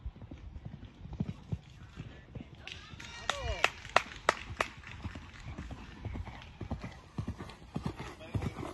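Hoofbeats of a bay show-jumping mare cantering on sand arena footing, a soft uneven patter. About three seconds in come a brief pitched voice-like sound and a quick run of sharp clicks, about three a second, the loudest sounds here.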